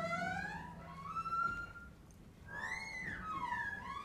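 Free-improvised ensemble music: a single high, whistle-like pitched line slides slowly up and down. It dips quieter just before halfway, then swoops up and back down. A faint low drone sits under it for the first second and a half.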